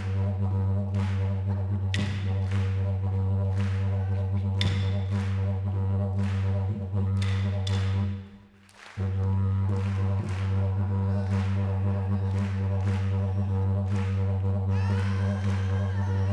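A yidaki (didgeridoo) plays a steady low drone to the beat of wooden clapsticks. The drone breaks off for under a second a little past halfway and then comes back. Near the end a voice starts singing over it.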